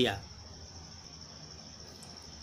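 A cricket chirping steadily with a high-pitched note in the background, over faint low room hum, in a pause between spoken words.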